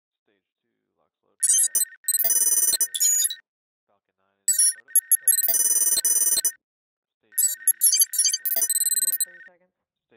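Electronic sci-fi interface sound effects: three bursts of rapid high beeping and digital chatter over a steady tone, each lasting about two seconds, with silent gaps between.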